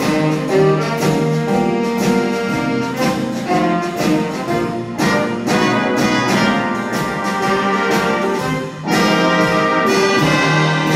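Student jazz big band playing a swing number: saxophones, trumpets and trombones over piano, electric guitar and drum kit. The level dips briefly about nine seconds in, then the band comes back louder.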